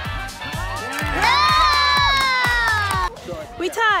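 Electronic background music with a steady beat. A long, high-pitched cry is held over it from about a second in, falling slightly in pitch. The music cuts off abruptly about three seconds in, and a short burst of voice follows near the end.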